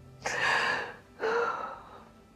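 A woman crying: two sharp sobbing breaths about a second apart, the second with a brief catch of voice in it.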